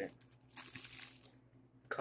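Thin clear plastic wrapping crinkling as it is pulled and worked off a model train car, for about a second starting half a second in.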